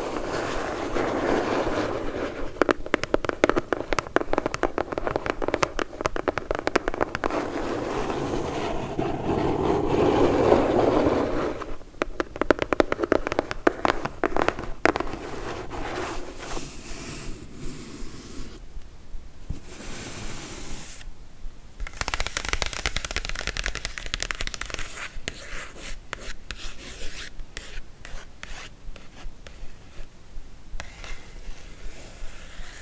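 Long fingernails scratching, rubbing and tapping on a corrugated cardboard box: a dense, crackly stream of fine scratches. It thins out about twelve seconds in and changes texture several times after that.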